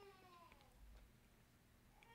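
Near silence: the hush of a large room, with a faint high, voice-like cry falling in pitch and fading out in the first half second.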